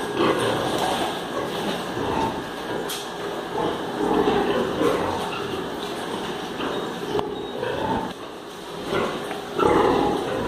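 A barn full of sows grunting and calling over each other, a steady din with louder calls every second or so and the loudest near the end.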